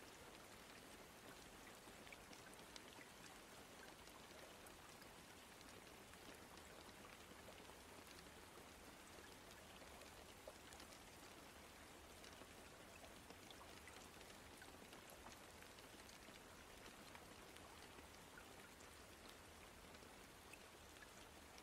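Faint steady rain, with scattered light ticks of single drops.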